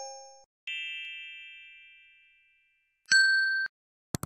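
Subscribe-button sound effects. A chime ringing out and fading about a second in is followed by a short, bright ding near the end that cuts off sharply.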